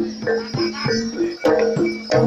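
Javanese gamelan playing a quick, steady repeating melody of struck metal notes on metallophones and gong kettles, roughly three ringing notes a second, moving between a few pitches.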